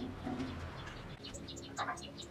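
A bird cooing in short, low, repeated notes, with faint high ticks and a brief brighter sound near the end.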